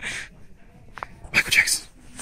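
A person's voice making short breathy, non-word sounds: a brief burst at the start, then a louder, higher one about one and a half seconds in.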